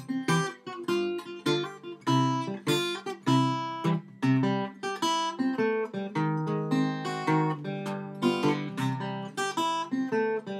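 Acoustic parlor guitar fingerpicked in a ragtime blues style: a steady, moving thumb bass under a picked melody on the treble strings, with many crisp note attacks.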